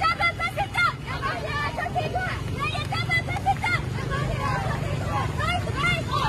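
A crowd of women chanting protest slogans together in short rhythmic phrases with raised, high voices. A steady low rumble runs underneath.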